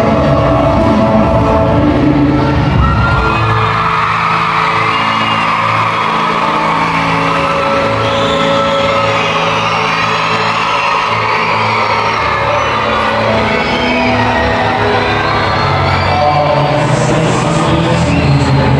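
Live music played through an arena's PA speakers, with a crowd cheering and whooping over it from a few seconds in.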